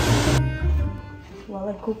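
Noisy kitchen sound that cuts off suddenly about half a second in, leaving faint background music; a woman's voice begins near the end.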